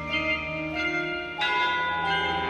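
Band front ensemble's mallet percussion playing: ringing, sustained chord tones, with a new chord struck about one and a half seconds in.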